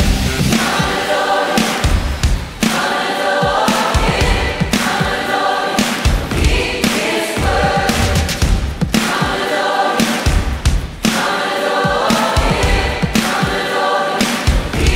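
Worship song: a group of voices singing together over a band with a steady drum beat.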